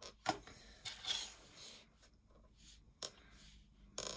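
Faint handling noises of small objects on a tabletop: a few light clicks with a brief rustle between them.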